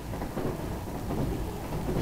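Low, steady rumble of a passenger train running, heard from inside the compartment.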